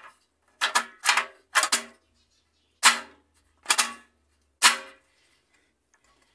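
Spring-loaded rear self-leveling legs on a Whirlpool/Kenmore washer's steel base frame, rocked by hand through their free play. They give six sharp metallic clanks at uneven intervals, each ringing briefly.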